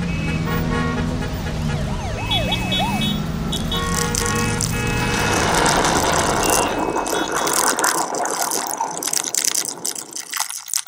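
Street-traffic sound effects: a steady low engine hum with short, repeated high beeping tones and a fast warbling alarm tone about two seconds in. From about five seconds in they give way to a dense crackling, clicking noise.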